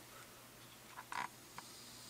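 Quiet room tone with a few faint, short clicks and a brief soft noise about a second in.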